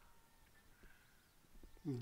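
Near silence: faint outdoor background with a few soft ticks, then a man's voice begins just before the end.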